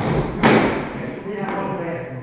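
Training weapons and heavy plywood shields striking in sparring: two quick hard thuds, the second about half a second in and the loudest, then a man's voice.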